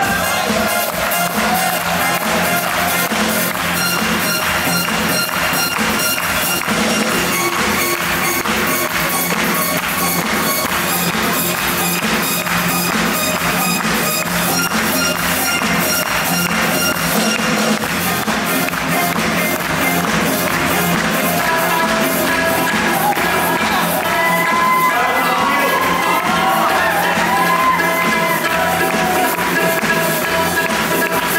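Live band playing a Bollywood song on drum kit, keyboard and electric guitar, with a steady, driving beat; a wavering melody line comes in over it in the second half.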